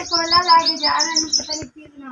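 A small bird chirping rapidly, about six short high chirps a second, stopping just before the end. Under the chirps a person's voice holds a sound.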